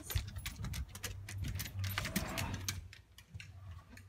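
Handling noise from a hand-held phone camera being carried while walking: an irregular run of small clicks, knocks and rustles with footsteps, over a low steady hum.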